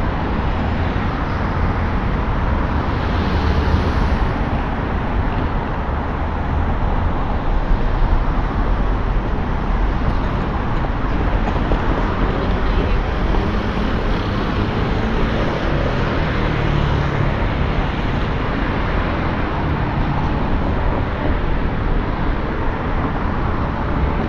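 Steady road traffic: cars driving past on a busy street, a continuous engine and tyre rumble.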